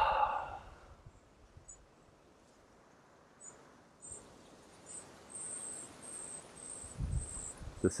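A long sighing exhale of breath trailing off, then faint high-pitched insect chirps from the surrounding bush, short and repeated, coming more often in the second half.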